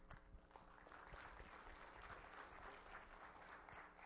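Faint audience applause: a steady patter of many hands clapping.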